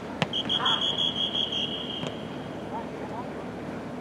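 Referee's pea whistle blown in one long, warbling blast of about a second and a half, signalling a stoppage in play. It comes just after a sharp thump, and a short shout overlaps its start.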